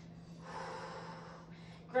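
One long breath, about a second, from a woman holding a forward-fold stretch, over a faint steady hum.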